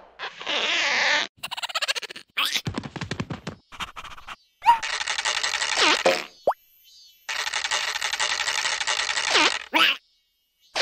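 Cartoon sound effects of air rushing through a long drinking straw: a short hiss, a quick rattle, then two long fluttering straw noises about a second and a half and two seconds long, with short sliding boing-like squeaks between them.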